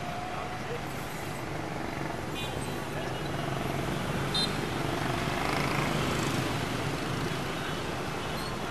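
Busy street traffic, mostly motorbike and scooter engines with cars and a bus passing close, as a continuous rumble that swells louder in the middle. Two short high beeps come about two and a half and four and a half seconds in.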